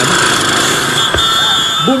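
Motorcycle engine and road-traffic noise picked up by a camera on a moving motorcycle as the bikes pull away from a stop. The noise is steady and loud, with a brief thump about a second in.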